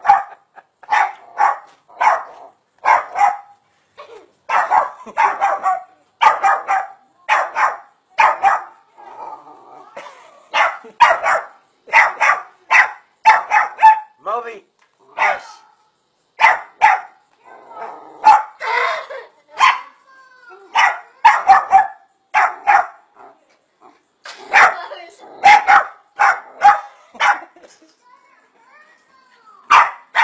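A dog barking over and over, short sharp barks at about two a second, with a couple of brief pauses.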